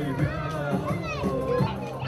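Music playing under several people's voices talking and calling out, with a high voice gliding up and down about a second in.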